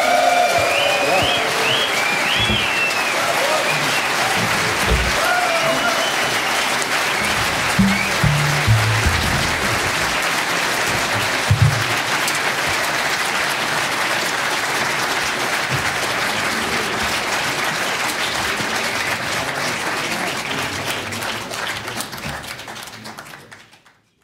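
Concert audience applauding at the end of a live big-band jazz performance; the applause fades out over the last few seconds.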